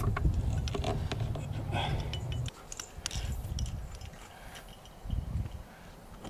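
Low rumble on the helmet camera's microphone, with light metallic clicks of climbing gear as a cam is worked into a rock crack. The rumble stops abruptly about two and a half seconds in, leaving quieter scattered clicks and a soft knock about five seconds in.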